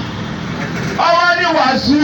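A man preaching in a chanting, half-sung delivery: about a second of steady rushing background noise with no voice, then one long held phrase.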